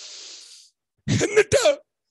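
A man breathes in sharply into a close microphone, a soft hiss, then about a second in gives a short, loud vocal burst.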